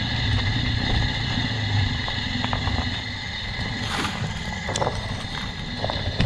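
Fatbike rolling along a snowy trail, with wind rumbling on the camera microphone and a few sharp knocks from the bike about halfway through and later on.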